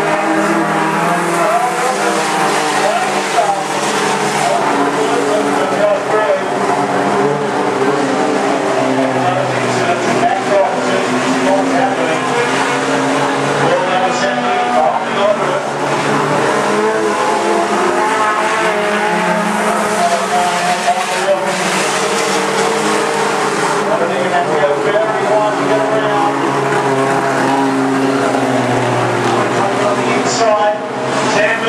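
Several small junior-sedan race cars running hard around a dirt speedway oval, their engines revving and rising and falling in pitch as the pack passes and goes round the bends.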